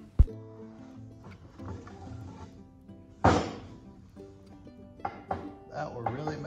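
Acoustic guitar background music, with a sharp wooden knock just after the start and a louder thud about three seconds in, as a 2x4 board is handled on a miter saw.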